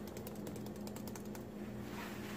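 A rapid run of small ratchet-like clicks from a spice container being handled, over a low steady hum.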